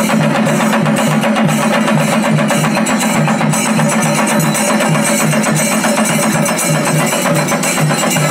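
Chenda drums beaten with sticks by a procession ensemble, playing a loud, fast, continuous rhythm.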